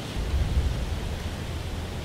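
Steady low rumble and hiss of outdoor background noise, slightly louder just after the start.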